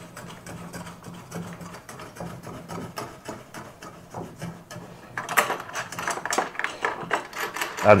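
Small bolts and washers worked by hand into the plastic mounting bracket of a solar street light: light clicking and rubbing of metal against plastic, faint at first, then busier and louder from about five seconds in.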